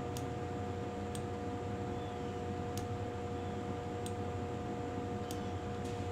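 Six faint, sharp clicks at irregular intervals, typical of a computer mouse being clicked, over a steady electrical hum and room hiss.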